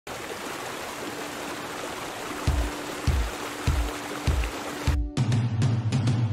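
Water rushing over a small rock-ledge cascade, a steady hiss, with music coming in over it: a held note and a low beat about every half second. About five seconds in the water sound stops abruptly and the music carries on alone.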